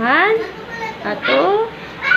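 A high voice making two playful, rising sing-song calls, the first at the start and the second about a second later, with a bit of laughter.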